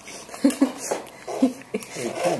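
A few short, soft voice sounds in a small room, broken up by brief pauses, with faint clicks between them.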